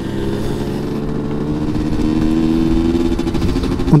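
Rieju MRT 50's 50 cc two-stroke single-cylinder engine pulling in third gear. Its revs climb steadily and ease off slightly near the end.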